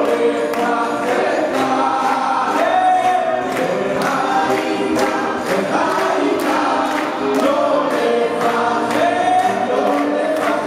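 Male voices singing a Hebrew song together into microphones, backed by an orchestra with strings, over a steady beat about twice a second.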